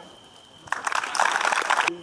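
Applause, starting just under a second in and cut off abruptly near the end.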